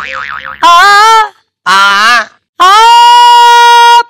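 A woman's singing voice doing warm-up notes without words: a brief warbling tone, two short sliding notes with pauses between them, then one long held note.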